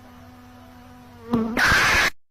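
A bee's steady low buzz, then a loud scream bursts in near the end and drowns it out.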